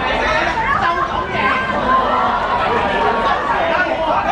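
Several people talking and calling out at once, in loud overlapping chatter with no single clear voice.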